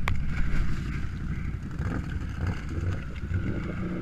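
ATV engine running at low revs, with water sloshing around as a tipped-over ATV sits in a deep mud hole. A sharp click right at the start.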